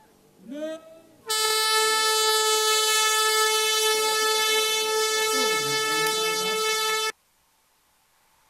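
A handheld canned air horn sounding one long, steady blast of about six seconds, signalling the start of a cycling race. The blast begins about a second in and cuts off suddenly.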